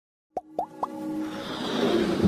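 Intro sound effects for an animated logo: three short pops, each rising in pitch, about a quarter second apart, then a rising swell of music building up.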